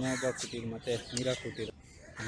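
People talking, with a bird calling in the background.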